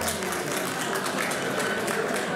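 Audience applauding, a steady patter of many hands clapping with some crowd voices under it.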